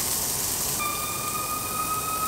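Meat sizzling on an electric tabletop grill, a steady hiss, with a steady high-pitched tone coming in about a second in.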